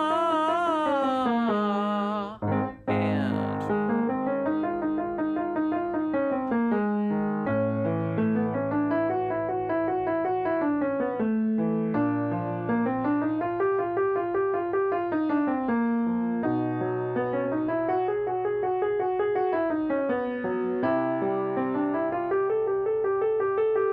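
A man's singing voice holds a note with vibrato for about two seconds and breaks off. Then a Yamaha piano plays a vocal warm-up pattern: a run of notes climbing and falling over a held low note, repeated about every four seconds.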